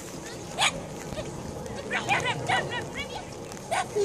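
A dog barking in short, sharp barks: one early, a quick run of several about two seconds in, and another near the end.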